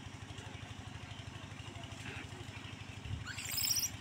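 Steady low throb of an idling engine, evenly pulsing. Near the end, a short, louder high-pitched call rises in pitch.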